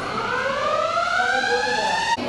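A siren-like tone with several overtones, rising steadily in pitch for about two seconds and then cut off abruptly.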